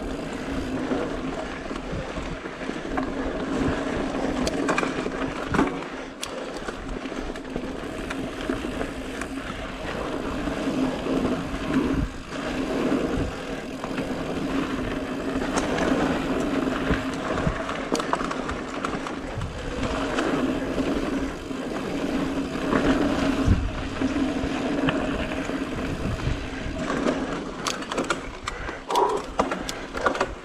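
Mountain bike rolling fast over a dirt and rock singletrack: tyres rumbling on the ground, the bike rattling with frequent knocks over roots and rocks, and a steady buzz throughout.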